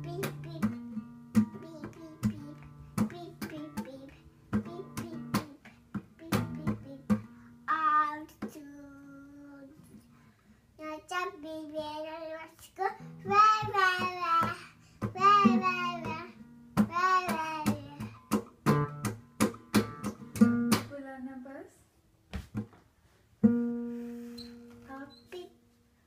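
A small child plucking and hitting the open strings of a nylon-string classical guitar in an uneven, unmeasured way, the open strings ringing. In the middle the child sings wavering notes over the guitar, and near the end one strum rings out and slowly fades.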